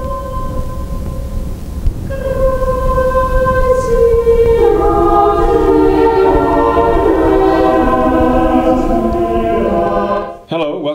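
Slow music of long held chords. One sustained note thickens from about two seconds in as more parts join, swelling into a full, slowly shifting chord over a steady low rumble.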